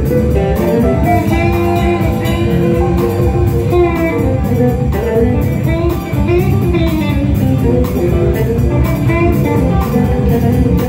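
Live rock band playing an instrumental passage: electric guitar lines over a drum kit, with no singing.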